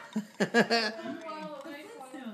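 Only voices: a man and a toddler talking, with the loudest vocal sound about half a second in.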